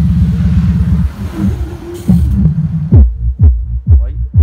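AV Pro powered subwoofer with a 30 cm driver playing bass-heavy music. A dense, steady bass line fills the first second; then from about three seconds in come deep, punchy bass hits about twice a second, each dropping in pitch.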